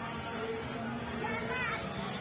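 A voice with gliding, rising and falling pitch but no clear words, over a steady background hiss.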